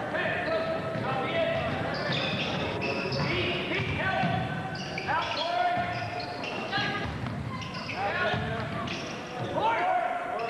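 Basketball game play on a hardwood gym floor: many short, rising sneaker squeaks over the thuds of feet and the ball bouncing.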